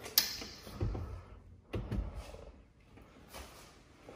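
A sharp metallic clunk as a kitchen oven door is shut, followed by a few soft thumps of footsteps on a tile floor.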